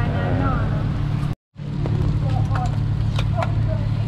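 A steady low mechanical hum runs under faint voices. It breaks off in a brief total silence a little over a second in, then goes on with a few light clicks.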